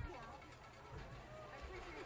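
Faint, distant voices of people at a football field talking and calling out, over a low rumble.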